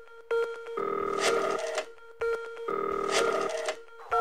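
Telephone ring sounds within an electronic music track: two buzzing ring bursts, each under a second long and about two seconds apart, over a steady pulsing electronic tone.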